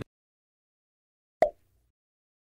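Silence broken once, about three-quarters of the way through, by a single short pop, a quiz-video transition sound effect.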